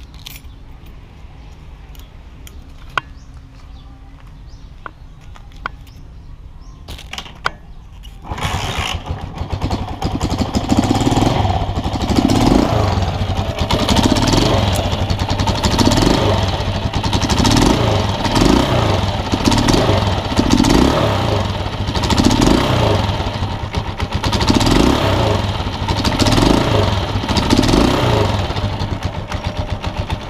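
Honda TMX155's single-cylinder pushrod four-stroke engine starting about eight seconds in after a few clicks, then running with its note rising and falling about once a second. It runs without the valve-train tick (lagitik) now that the rocker arm and push rod are new and the valve clearance is set.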